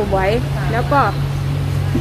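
A woman speaking Thai, breaking off about halfway through; under her voice and in the pause runs a steady low mechanical hum, like a motor running.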